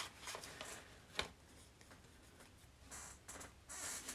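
Faint rustling and handling of paper and stickers on a journal page, with a sharp tap about a second in and a little more rustling near the end.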